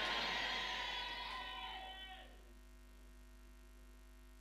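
A congregation's loud crowd response to the preacher's declaration, a mass of voices that fades away over about two seconds, leaving a steady electrical mains hum on the recording.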